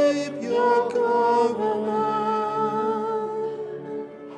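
Small mixed church choir singing the responsorial psalm, several voices sustaining long notes, with a held note tapering off near the end.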